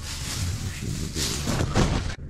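Rustling of tent fabric against the handheld camera as it is moved, loudest a little past halfway, over a steady low rumble of a neighbour's engine running to charge batteries.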